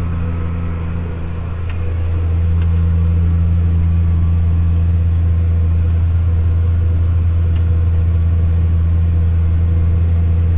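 Case IH tractor's diesel engine running steadily under load while pulling a disk harrow, heard inside the cab as a heavy, even, low drone. It grows louder about two seconds in.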